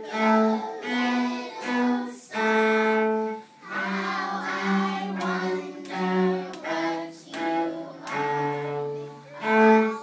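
A cello played with the bow: a slow melody of held notes, each lasting about half a second to a second and a half, with short breaks between them.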